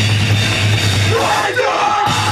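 Hardcore punk band playing live: distorted guitars, bass and drums with shouted vocals. Near the end the band's low end drops out for a moment, leaving a yell, then the full band crashes back in.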